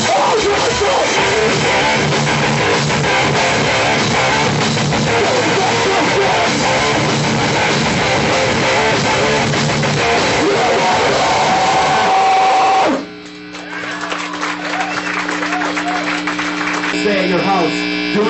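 Live hardcore punk band playing loud distorted electric guitars and drums. The song cuts off suddenly about 13 seconds in, leaving a steady amplifier hum under crowd voices.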